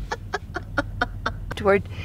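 A person laughing in a quick run of short chuckles, about five a second, for about a second and a half.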